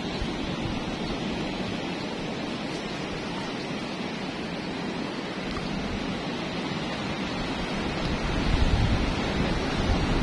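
Ocean surf breaking on a rocky shore, a steady wash of noise, with wind on the microphone; the low rumble swells louder near the end.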